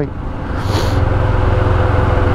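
Royal Enfield Himalayan's 411 cc single-cylinder engine running steadily while the bike is ridden, with road and wind noise, heard from the rider's seat. A brief hiss comes about half a second in.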